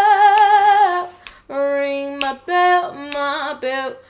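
A woman singing unaccompanied: a long held note that slides down and breaks off about a second in, then several shorter sung notes at a lower pitch.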